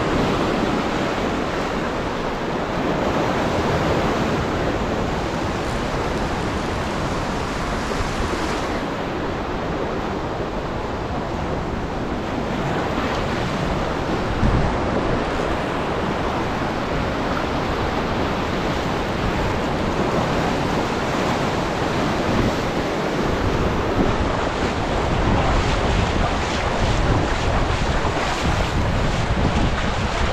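Ocean surf washing and breaking in the shallows, a steady rushing wash, with wind buffeting the microphone.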